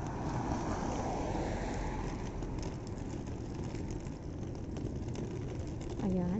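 A car driving past on the road, its tyre and engine noise swelling over the first two seconds and then easing, over a steady rush of traffic and wind noise.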